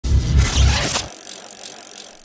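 Bicycle sound effect for an animated cyclist logo: a loud rush with a heavy low rumble for about a second, cut off sharply, then a fainter steady hiss that fades out.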